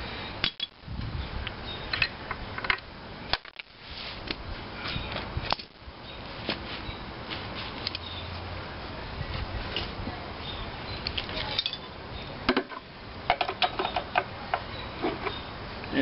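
Scattered light metallic clinks, taps and scrapes of a hand tool working loose the gas-tank mounting bolts on an antique stationary engine's cast-iron base.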